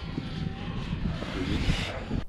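Wind buffeting the camera's microphone: an uneven low rumble with a light hiss above it.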